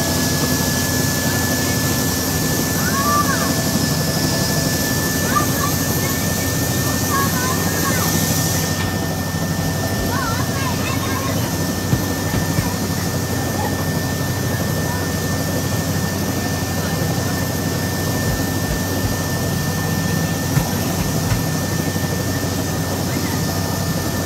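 Helicopter engine and rotor noise inside the cabin: a steady drone with a thin, steady high whine over it.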